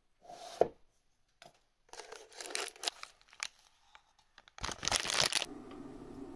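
A tea tin opened with a sharp click about half a second in, then paper or foil packaging crinkled and torn in several bursts, loudest near the end.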